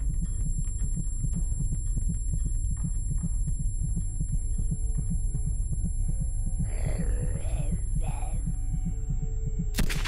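Film sound design of a dazed aftermath: a deep pulsing throb like a heartbeat under a thin, steady high-pitched ringing. A voice is heard briefly about seven seconds in, and a loud gunshot comes near the end.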